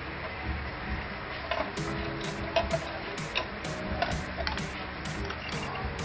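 Background music with a steady beat: a crisp hi-hat-like tick about twice a second comes in about a second and a half in, with a few soft held notes.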